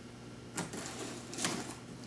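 Hands handling a cardboard box and picking at its packing tape: a few faint scratches and taps, one about half a second in and another about a second and a half in.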